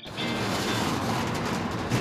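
Steady rattling noise used as a title transition sound effect, cutting off as the intro ends.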